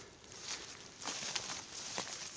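Footsteps through forest undergrowth: several soft steps, with feet brushing and crunching through leaf litter and low plants.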